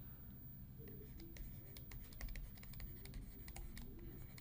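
Faint, irregular clicks and taps of a stylus on a drawing tablet as a word is handwritten, over a low hum.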